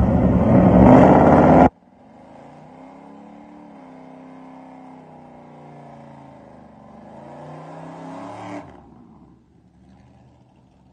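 Chevrolet Camaro SS's V8 engine: loud, hard revving for about the first second and a half, cut off suddenly. Then the engine runs quietly at low revs with small rises and falls in pitch, building slightly before dropping off near the end as the car rolls forward.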